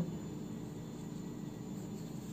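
Steady low background hum with faint hiss, without any distinct events.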